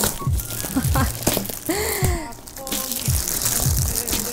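Packing tape being peeled off a plastic-wrapped parcel and the plastic crinkling in the hands, with background music.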